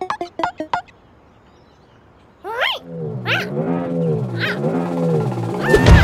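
Cartoon sound effects: a few quick plucked ticks at the start, a pause, then a low wobbling, voice-like comic sound with rising squeaky glides. It builds to a loud upward sweep near the end, as a character springs up on a coil spring.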